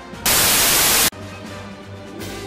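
A loud burst of TV static hiss, under a second long, cutting off abruptly, laid over theme music.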